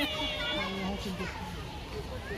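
Background voices of several people, children among them, talking and calling out, with a high-pitched child's call right at the start.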